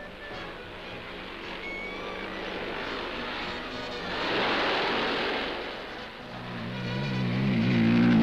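Motorcycle engines running during an off-road skill trial, over background music; near the end one motorcycle gets louder and revs up as it passes close.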